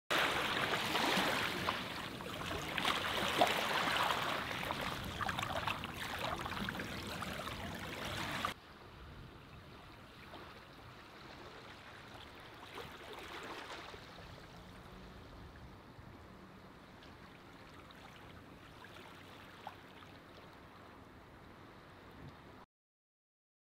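Running, splashing water, fairly loud for about the first eight and a half seconds, then cut abruptly to a much fainter, steady wash of water.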